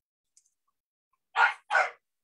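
A dog barking twice in quick succession, two short loud barks near the end.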